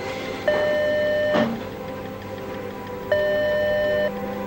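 Telephone ringback tone: a steady electronic beep lasting about a second, heard twice with a pause of under two seconds between, as a call rings out unanswered. Soft background music runs underneath.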